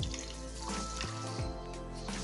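Water pouring from a glass jar into a pressure cooker onto broken wheat, under steady background music.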